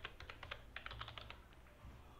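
Computer keyboard typing: a faint, quick run of about a dozen keystrokes that stops about a second and a half in.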